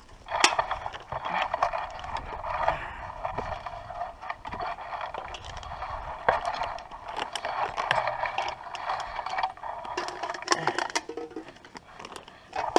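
Handling noise: a hat brim and clothing scraping and rubbing against the camera while walking, a steady rustle with irregular clicks and knocks.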